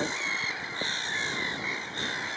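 A chorus of black-headed gulls calling from their nesting colony: many overlapping calls with no pause.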